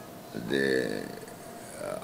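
A man's voice making one drawn-out hesitation sound, a held vowel of about two-thirds of a second that starts a little way in and tails off.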